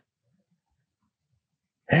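Near silence: a pause in the conversation, with a man's voice starting near the end.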